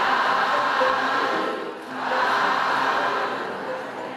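A congregation chanting together in unison, in two long swells of many voices; the second swell fades near the end.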